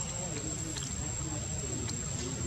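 Faint, muffled human voices in the background over a steady low rumble, with a few light clicks.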